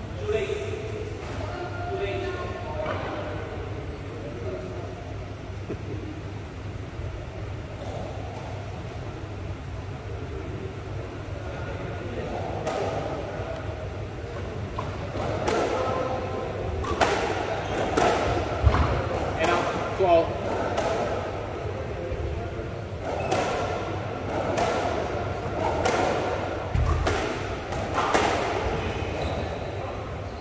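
Squash rally: a squash ball being struck by racquets and hitting the court walls, sharp knocks roughly a second apart echoing in the court. The rally starts about twelve seconds in, after some quiet voices.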